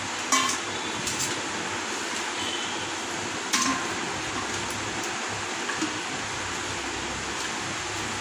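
Stainless steel bowl clinking on the countertop a few times, with short metallic rings, the sharpest about a third of a second in and again about three and a half seconds in, over a steady background hiss.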